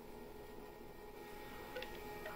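Quiet room tone with a faint steady hum, and one faint click near the end.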